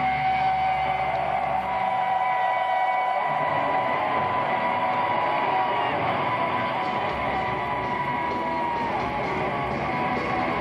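Heavy metal band playing live, recorded from the audience: electric guitar holding long sustained notes over a dense wash of sound, with the deep bass thinning out for a few seconds and coming back about seven seconds in.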